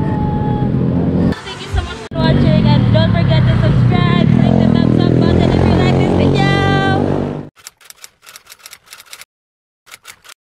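Engine of a moving vehicle, heard from aboard, running with its pitch rising and falling, with voices over it. The sound cuts off suddenly about seven and a half seconds in, leaving only a few faint clicks.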